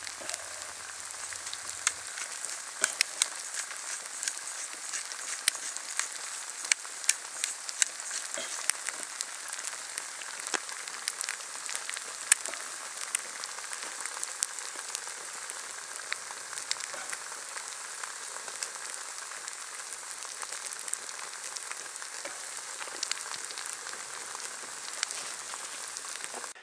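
Eggs, onions and mushrooms frying in a stainless-steel pan: a steady sizzle with frequent small pops and crackles.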